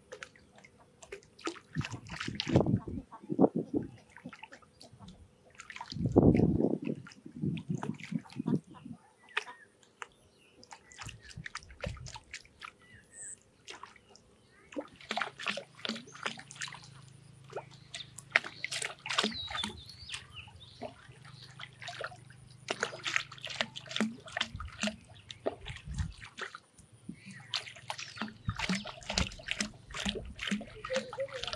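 River water splashing in irregular bursts as a fish caught on a bottle-float hook line thrashes at the surface, jerking the plastic bottle about; the hardest splashes come in the first seven seconds or so.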